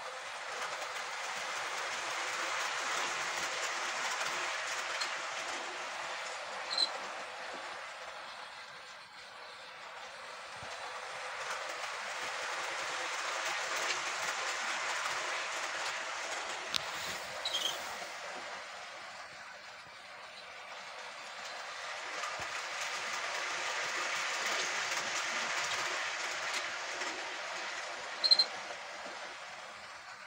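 Model railway train running round its track. Its wheels and motor rattle, swelling and fading three times as it passes close by about every ten seconds, with a brief sharp click on each pass.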